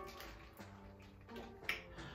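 A few short, sharp clicks and faint plastic crinkling from hands working through a plastic seafood-boil bag, over soft background music.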